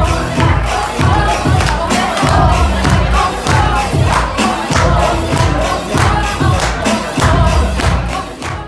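Loud dance music from a DJ's sound system with a heavy bass beat about twice a second, and a crowd's voices over it.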